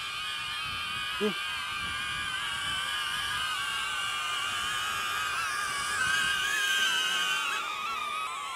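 Two small quadcopter selfie drones, a DJI Neo and a HoverAir X1, hovering and descending overhead, their propellers making a high, wavering whine of several pitches at once. The pitches shift near the end.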